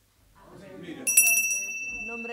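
A small bell struck about a second in, ringing on with a clear high tone that slowly fades: the bell that opens a council session.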